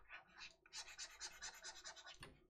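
Faint scratching of a pen stylus on a drawing tablet as it makes quick back-and-forth brush strokes, about eight a second.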